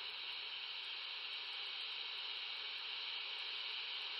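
Steady hiss of open-channel receiver noise from a Quansheng UV-K5 handheld radio's speaker, its squelch set to zero.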